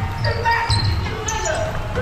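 A basketball dribbled on a hardwood gym floor, with players' voices and a few short high squeaks, all echoing in a large gym.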